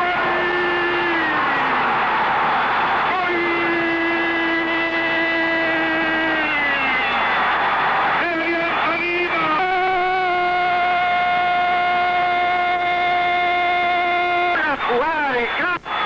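A Spanish-language radio football commentator's drawn-out goal cry, "gol", shouted in three long held notes. The first two slide down in pitch at the end, and the last is held steady for about five seconds before he breaks into fast talk near the end.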